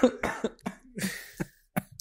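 A man laughing in short bursts close to a microphone, with a cough about a second in.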